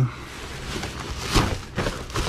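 Black plastic trash bags and loose rubbish rustling and crinkling as gloved hands dig through a dumpster, in a few short rustles, the loudest about a second and a half in.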